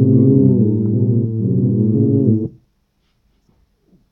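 A homemade electronic beat played from a pad controller: low, dense layered chords that shift in steps, then cut off suddenly about two and a half seconds in. After that only a few faint clicks of pads being pressed.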